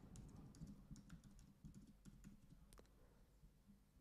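Faint typing on a computer keyboard: a quick run of irregular key clicks that stops a little before three seconds in.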